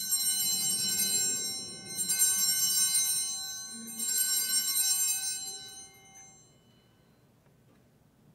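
Altar bells (Sanctus bells) rung three times, each a bright cluster of high ringing tones that fades out, about two seconds apart. They mark the elevation of the chalice at the consecration.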